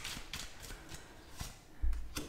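Tarot cards being handled: faint slides and light clicks as a card is drawn off the deck, with a soft thump near the end.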